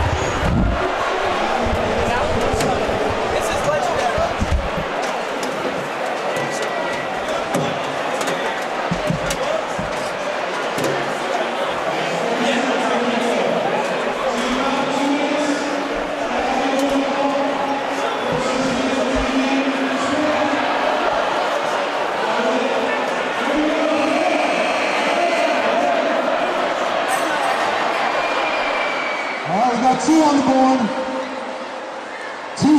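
Crowd chatter and voices echoing in an indoor ice arena, with scattered sharp knocks and thuds through the first half.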